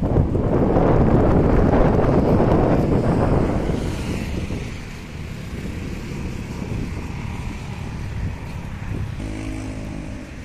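Wind buffeting the microphone, heaviest in the first four seconds, over a steady background of vehicle noise; a low engine hum comes in briefly near the end.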